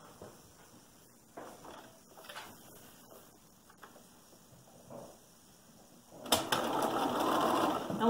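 A few faint handling sounds, then a little over six seconds in, a Bernina domestic sewing machine starts up and runs steadily, stitching a registration line through the paper foundation and fabric.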